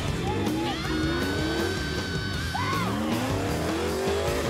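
A competition 4WD's engine revving hard in rising bursts as it claws up a dirt bank with its tyres spinning, under rock music with a held, bending guitar note.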